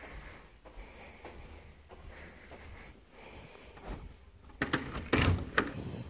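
A manufactured home's front door being unlatched and opened near the end, a few sharp clicks and knocks, after several seconds of faint room noise.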